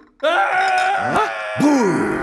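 A man's long, wailing cry of fright, starting a moment in and held for about a second, then breaking into shorter rising-and-falling groans.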